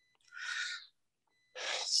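A man's breath, close to the microphone: a short breath with no voice in it, then a second breath near the end that runs straight into speech.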